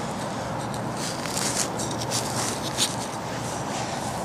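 A plug of grassy soil being cut in half with a digging knife and broken apart by hand, heard as a run of short scrapes and rustles between about one and three seconds in, over a steady background rush.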